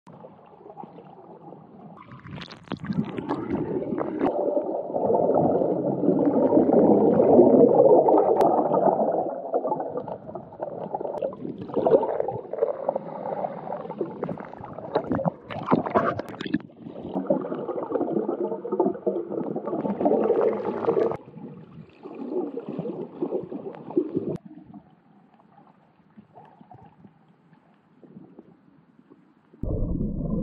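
Muffled underwater sound picked up by a camera in the sea: water rushing and bubbling around a swimming free diver, in swelling surges with a few sharp bubble crackles. It drops to a faint murmur for the last few seconds, then turns suddenly louder.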